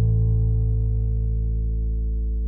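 Electric bass's open A string plucked once and left to ring: a single low sustained note.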